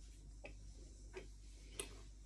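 Faint close-up chewing of a soft curd pastry, with three small mouth clicks spaced roughly two-thirds of a second apart. The last click, near the end, is the loudest.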